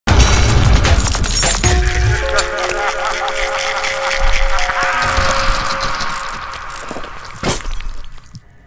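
Dark cinematic sound design under a production-company logo. Heavy low booms and harsh noise fill the first two seconds, then several eerie held tones ring over a swirling texture and slowly fade, with one sharp hit near the end.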